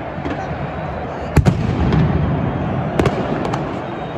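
Firecrackers going off among football supporters in the stands: a sharp bang about a second and a half in, the loudest, then a few more near the end, over the steady din of the crowd.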